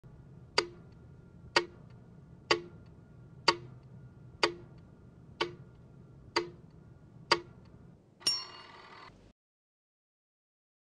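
Countdown-leader ticks: eight sharp clicks about one a second over a low steady hum, then a short ringing tone a little after eight seconds, after which the sound cuts off suddenly.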